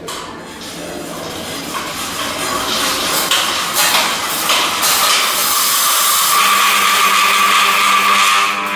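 Bicycle rear wheel, chain and brake disc spinning on a stand as the pedal crank is turned by hand: a mechanical whirr that builds in loudness and settles into a steady high hum. Near the end, a home-made electromagnetic disc brake, with two 12-volt electromagnets gripping the disc, is applied to bring the wheel to a stop.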